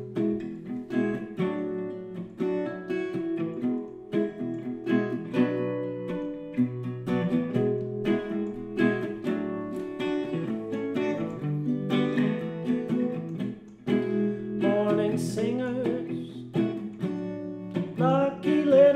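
Solo acoustic guitar playing the intro to an indie-folk song, chords and picked notes in a steady rhythm.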